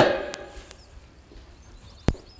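A pause in a man's speech. His last word fades out into the room's echo at the start, leaving faint room tone with a few light clicks and faint high chirps.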